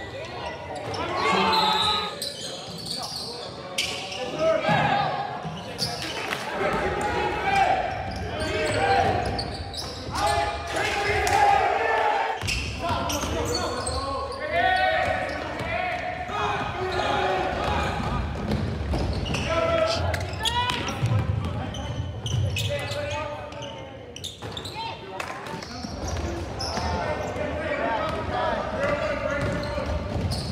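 Live basketball game sound in a gym: indistinct voices of players and spectators, with a basketball bouncing on the hardwood court.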